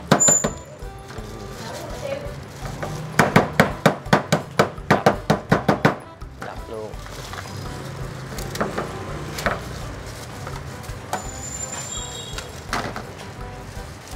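A knife chopping crab on a wooden cutting board: a quick run of about a dozen sharp knocks, roughly five a second, a few seconds in, with a few single knocks before and after.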